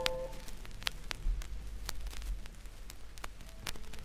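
The last chord of a pop song dies away right at the start. Then comes the quiet gap between tracks of a vinyl record, filled with surface crackle and scattered clicks and pops.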